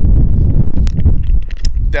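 Low rumble of wind buffeting the microphone, with a few sharp clicks of plastic and metal as a DEF dispensing nozzle is handled and snapped onto its hose coupling.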